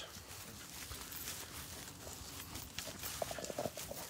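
Faint footsteps and rustling through dry field grass, with scattered soft crunches and a few duller footfalls near the end.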